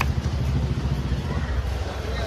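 Steady low background rumble, with faint voices near the end.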